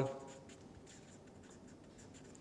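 Felt-tip marker writing on paper: faint, short scratchy strokes as a word is written.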